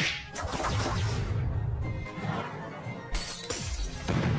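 Cartoon soundtrack: background music with a sudden shattering crash effect at the start and another sharp burst about three seconds in.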